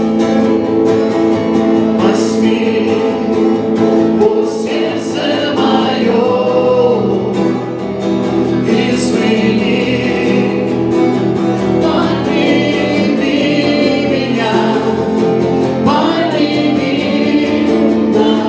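Live Christian worship song: a woman sings lead into a microphone over acoustic guitar, with other voices singing along.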